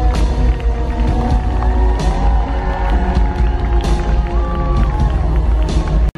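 Live pop music from a concert sound system, with a heavy bass beat and a melody line over it, and a crowd cheering.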